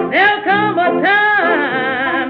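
1927 jazz-band recording: a woman's blues vocal with wide vibrato over a small band of cornet, clarinet, trombone, piano and banjo. The top end is cut off, giving the narrow, dull sound of an old 78 record transfer.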